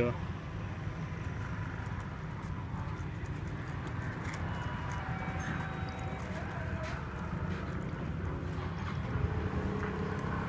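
Iced tea poured from a plastic bottle over crushed ice in a paper cup, with faint trickling and ice crackling. A steady low background rumble runs under it.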